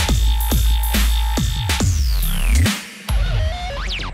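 Dubstep track with heavy sub-bass and a chopped synth figure repeating about twice a second. Falling sweeps lead into a brief drop in the bass near three seconds in, then a new section starts.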